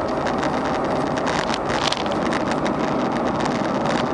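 Steady road noise inside a car's cabin while cruising on the highway: engine hum, tyre roar and wind. There is a brief louder hiss just under two seconds in.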